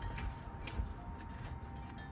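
Low steady wind rumble on the microphone, with a few faint ticks.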